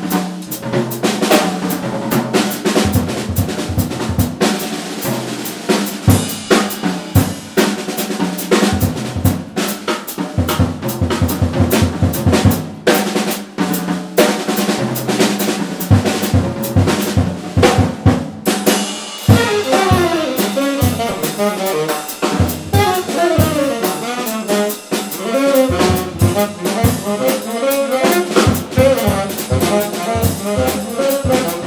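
Jazz drum kit soloing alone, with dense, quick strokes on snare, bass drum and cymbals. About 19 seconds in, two tenor saxophones come in together with a fast bebop line over the drums.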